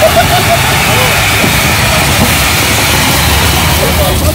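Ground fountain fireworks spraying sparks with a steady, loud hiss, and a few voices over it at the start.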